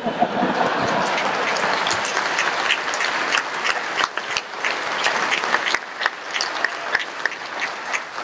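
Audience laughing and applauding, with laughter at the start and clapping that goes on throughout, thinning somewhat toward the end.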